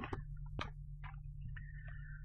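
Quiet room tone: a steady low hum with a few faint ticks about half a second apart, and a brief thin high tone near the end.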